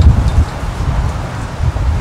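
Wind buffeting the microphone: an uneven low rumble, heaviest at the very start, over faint outdoor hiss.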